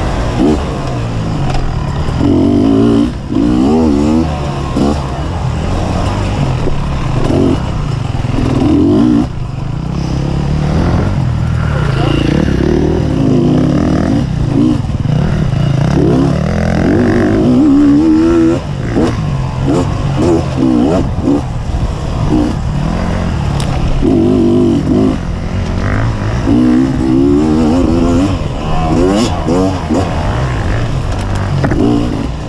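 Dirt bike engine (2015 Beta 250RR) revving up and down over and over as it is ridden along a rough trail, with scattered knocks and clatter from the bike over the ground.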